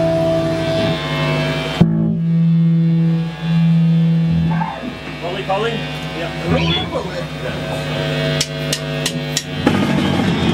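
Electric guitars held ringing through the amps between songs, one sustained note cut off about two seconds in, with voices underneath. Near the end, four quick drumstick clicks count in, and the full rock band starts playing.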